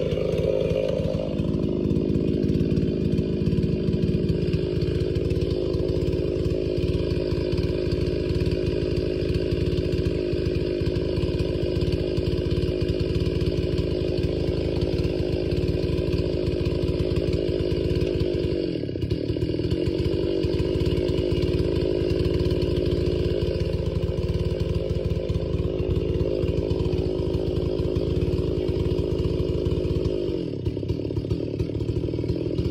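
Ported Stihl 066 chainsaw running steadily at high revs, with a brief drop in revs about 19 seconds in.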